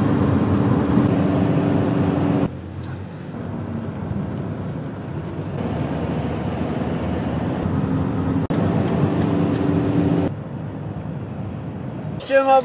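A van driving at highway speed, heard from inside the cab: a steady engine hum and road rumble. The level drops suddenly about two and a half seconds in, comes back up around the middle, and drops again near the end.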